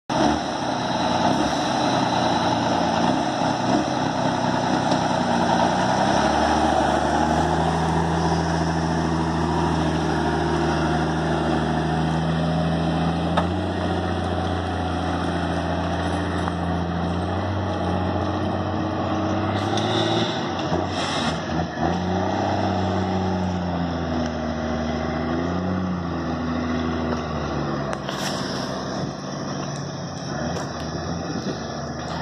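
Old Chevrolet truck's engine running as the truck pulls away and drives off, its pitch climbing and dropping several times through the gear changes, then fading as it moves away near the end.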